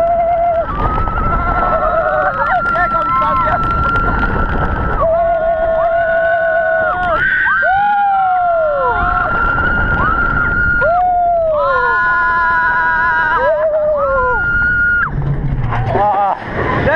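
Roller coaster riders screaming: a string of long, high held screams that fall away at the end, several voices overlapping, over the steady rush of wind and the rumble of the floorless coaster train on its track.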